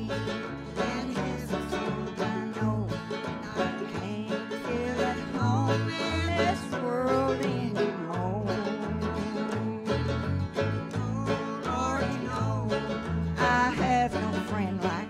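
Banjo and acoustic guitar playing a country or bluegrass tune together.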